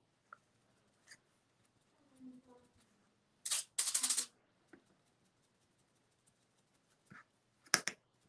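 Scratchy rustling from hands handling a paint sponge and a clear plastic piece over a wooden cutout on a craft table. One louder burst lasts under a second about halfway through, and a shorter one comes near the end, with a few faint ticks between.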